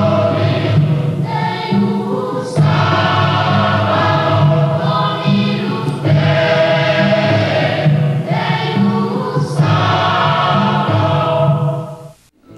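Choral music: a choir singing slow, held notes in phrases a few seconds long.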